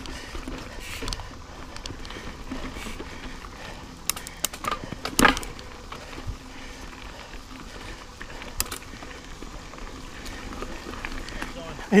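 Mountain bike rolling along dirt singletrack, with a steady rush of tyre noise and sharp knocks and rattles from the bike over roots and rocks, a cluster of them about four to five seconds in.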